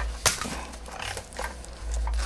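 Things being handled while a filter is fetched: a few light clicks and knocks with faint rustling, the sharpest click about a quarter second in.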